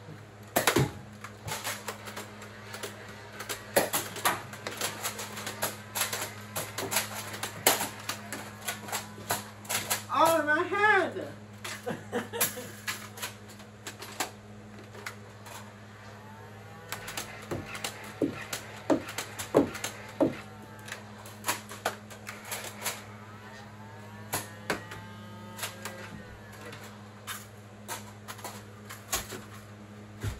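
Irregular sharp clicks and knocks of a Nerf battle: blasters being primed and fired, and foam darts hitting furniture and boxes. A short wavering voice cry comes about ten seconds in, over a steady low hum.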